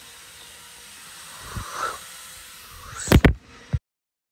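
Low hiss of room tone, then two loud, sharp knocks close together about three seconds in and a smaller one just after, before the sound cuts off abruptly.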